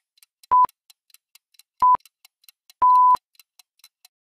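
Countdown timer sound effect: a short electronic beep about once a second, the last one near the end held longer, over a faint fast ticking like a clock.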